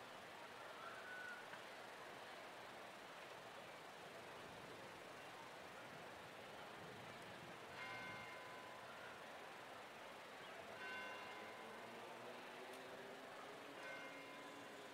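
Near silence: a faint, even background hiss, with a few faint brief sounds in the second half.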